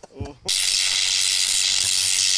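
A man's laughter tails off in the first half-second, then a loud burst of hissing static noise starts abruptly and cuts off sharply at the end: a TV channel-change sound effect.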